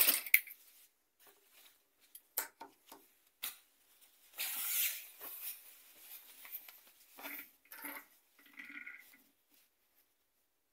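White lining fabric being handled and shifted by hand at a sewing machine: soft rustles and a few light clicks, with one longer swish a little before halfway. The sewing machine's stitching run ends right at the start.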